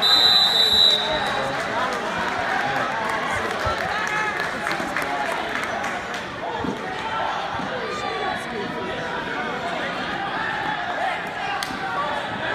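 A referee's whistle blows once for about a second, stopping the action on the mat. The crowd of spectators keeps talking and calling out underneath.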